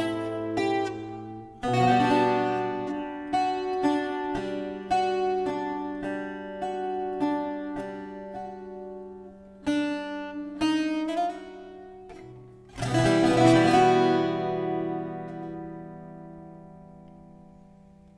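Azorean viola da terra played solo: a run of plucked notes over a held low note, ending on a full strummed closing chord that rings and slowly dies away.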